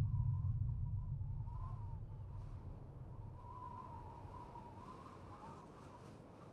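A deep low boom dying away slowly. Above it there is a faint wavering high tone that is clearest from about three seconds in.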